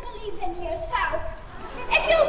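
A small child's high-pitched voice talking.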